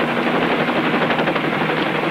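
Helicopter engine and rotor as heard inside the cockpit in flight: a loud, steady, rapid chop.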